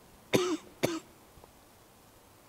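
A man coughing twice, about half a second apart.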